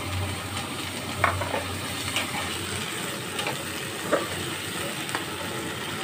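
Vegetables sizzling in oil in a nonstick frying pan, a steady hiss, with a metal spatula clicking against the pan a handful of times as they are stirred.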